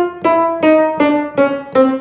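Restored 1901 Steinway Model O grand piano: about five single notes played one after another around the middle of the keyboard, stepping down in pitch, each cut off short by its damper as the key is let go. This is a test of the damping, which should stop each note evenly.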